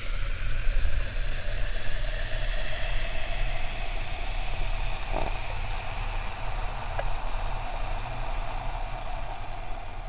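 Carbonated soft drink fizzing in a glass: a steady hiss of bubbles with faint crackling ticks and a brief louder pop about five seconds in.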